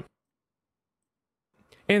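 Dead silence, the audio gated to nothing, between two spoken phrases; a voice resumes near the end.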